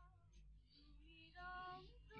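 A voice softly singing a devotional song, one note held for about half a second near the end.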